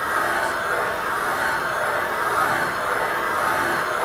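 Valve seat cutting machine running steadily, its three-angle cutter turning at about 50 rpm on a carbide pilot as it cuts an intake valve seat in an MGB cylinder head; an even, unbroken machine noise.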